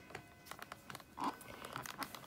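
Light, scattered clicks and taps of an inked clear stamp and paper being handled and set in place on a craft table.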